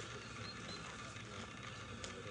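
Faint, steady outdoor background noise, with two brief, faint high chirps about half a second in.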